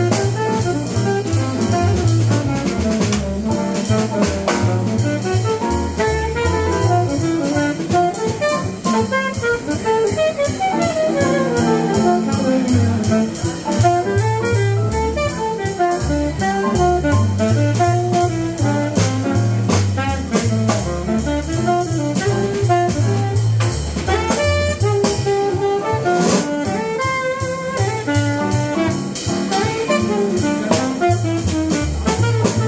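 Live jazz quartet: a saxophone improvises a winding melody over double bass and a drum kit played with sticks, with cymbals running throughout.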